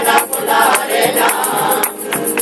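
Amateur rociero choir singing a sevillana rociera in unison, with rhythmic handclaps and a tambourine keeping the beat; the voices hold one long line through the second half.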